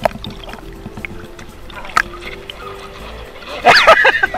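A person falling off a surfboard into the sea, with a loud splash near the end.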